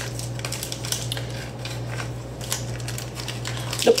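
Light clinks and knocks of kitchenware being handled, over a steady low hum.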